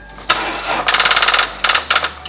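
Lexus IS300's starter clicking rapidly on a dead battery as the key is turned, in three bursts, the middle one the longest: the engine does not crank or start.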